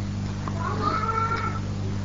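A single drawn-out, high-pitched call lasting about a second, rising slightly and then falling away, over a steady low electrical hum.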